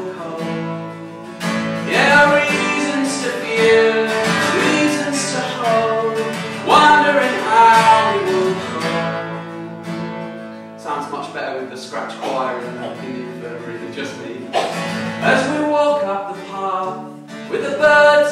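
Acoustic guitar strummed, with chords ringing out and fading between fresh strums.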